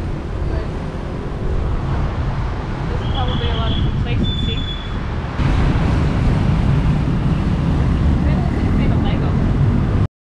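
Steady road traffic noise from a busy roundabout, with wind on the microphone. It gets louder about halfway through, and a brief high thin tone sounds twice in the middle.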